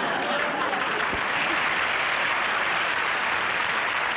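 Audience applauding, a steady dense clapping that holds at one level throughout.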